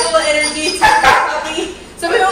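A standard poodle puppy barks, a short sharp bark about a second in, over background music.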